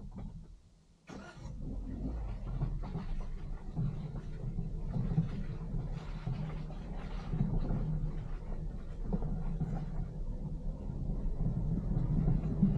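Suzuki Jimny driving slowly along a rutted forest dirt track, heard from its roof: a steady low engine sound that rises suddenly about a second in as the vehicle sets off, with irregular knocks and rattles from the bumpy ground.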